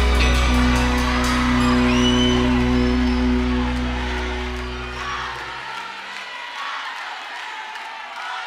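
A cuarteto band holding its final chord, which fades and cuts out about five and a half seconds in, with a live audience whooping and shouting over it and carrying on after the music stops.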